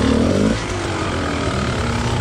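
Dirt bike engine running at low revs on a slow side-hill crawl. It revs briefly in the first half second, then settles into a steady low chug.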